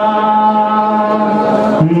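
A man's voice chanting a noha (Shia mourning lament), holding one long steady note, then dropping to a lower note near the end as a new phrase begins.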